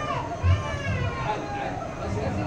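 Children's voices chattering and calling out excitedly in high, rising and falling tones, with a short low thump about half a second in.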